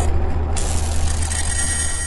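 Sound effect on an animated outro card: a deep steady rumble with hiss over it, a fresh hiss setting in about half a second in.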